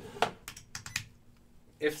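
A quick run of sharp clicks over about a second, like keys typed on a computer keyboard, then a short lull.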